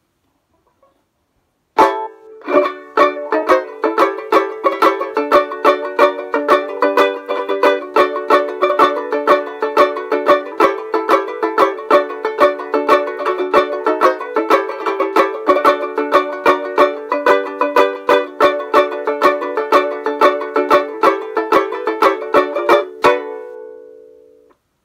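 Pre-war 1920s Abbott banjo ukulele with a maple bridge and fishing-line strings, strummed in a quick, rhythmic tune. The playing starts about two seconds in and stops near the end on a final chord that rings out and fades.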